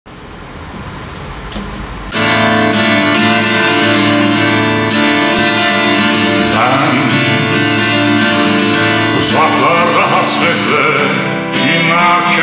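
Instrumental song intro with an acoustic guitar being strummed, coming in suddenly about two seconds in after a faint rising hiss.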